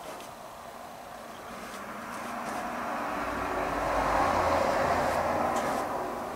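A vehicle passing by, its noise swelling with a low rumble over a few seconds and fading near the end.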